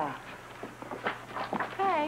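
Footsteps on a hard studio floor: a quick run of light, even clicks, with a woman's voice coming in near the end.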